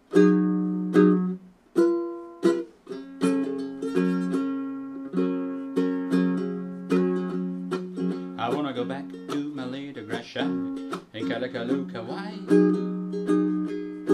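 APC baritone ukulele tuned in fifths, chords plucked and strummed: a few separate ringing strokes at first, then a steady strumming rhythm.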